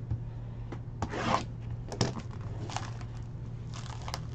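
Hands handling trading cards and their packaging: a rustling scrape about a second in, a sharp click at two seconds, and a few softer rustles, over a steady low hum.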